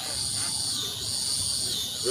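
Insects singing in a steady, high-pitched chorus over a low background rumble.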